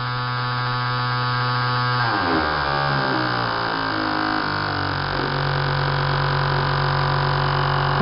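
Fuel injectors pulsing rapidly on an injector test bench, a steady electric buzz. About two seconds in, the buzz steps down in pitch over a few seconds, then settles into a lower steady hum.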